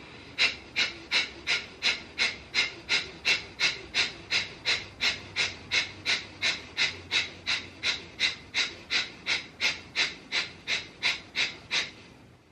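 Breath of fire yoga breathing: rapid, forceful exhalations in a steady even rhythm, about three a second, each a short sharp hiss of air.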